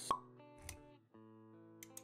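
Pop sound effect just after the start, then a softer low thud, over background music with held notes.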